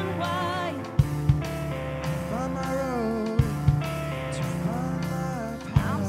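Rock band playing live: a singer over electric guitars, bass and drums, with pairs of loud drum hits about every two and a half seconds.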